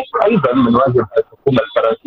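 Speech only: a voice talking over a telephone line, with thin, narrow telephone-quality sound.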